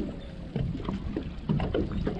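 Water lapping and knocking against the hull of a small open skiff, with an uneven low rumble.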